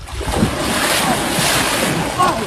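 Heavy splashing and churning of water as large fish thrash and a man wades and grabs at them in shallow water: a continuous rushing that builds after the start and is loudest in the second half.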